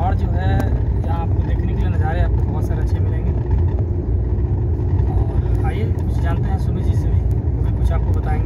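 Steady low rumble of a car's engine and tyres heard from inside the moving car's cabin, with a man's voice talking over it in short stretches.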